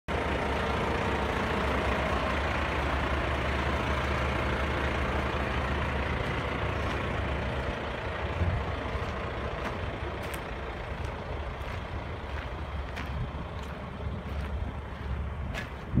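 A vehicle engine running steadily with a low rumble, easing off about halfway through, with a few light clicks later on.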